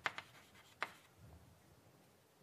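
Chalk on a blackboard finishing a written word: a few sharp taps and short strokes in the first second, stopping about a second in.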